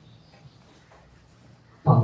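A pause in a man's speech through a microphone: his drawn-out syllable fades at the start, faint room tone follows, and his voice returns shortly before the end.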